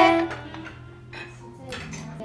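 Faint clinks of glasses and tableware over soft background music in a bar, with a low steady hum.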